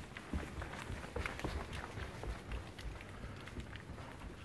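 Quick footsteps running up carpeted stairs: a string of soft, irregular thumps.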